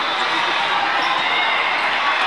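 Indoor volleyball tournament hall ambience: a steady din of many voices with the thud of a volleyball being struck.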